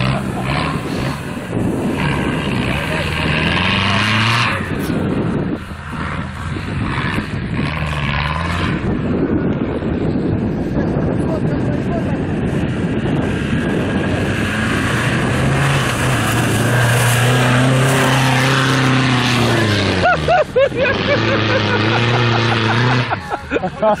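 Engine of a modified off-road 4x4 revving hard as it takes a run-up through swamp mud, the revs rising and falling under load. Voices shout briefly near the end.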